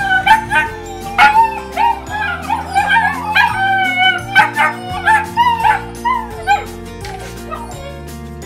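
German Shepherd puppies whining and yipping in many short, high-pitched calls that bend up and down in pitch, over background music with steady held low notes.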